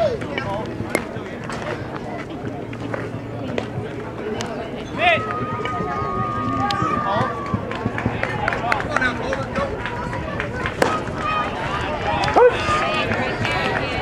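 Voices of spectators and players calling out and chattering around a youth baseball diamond, with a long drawn-out call about five seconds in. Short sharp clicks and knocks are scattered throughout.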